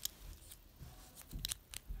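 Plastic clicks from a Bakugan Trox Ultra figure being twisted and handled in the hands: a few quick sharp clicks about a second and a half in and another near the end, soft handling noise between.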